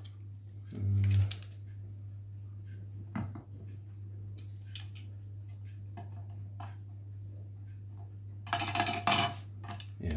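A 3D-printed plastic hopping-rabbit slope walker clattering on a tilted slate tile: a few separate light taps, then a quick run of clatter near the end. The slope is too steep for it to walk.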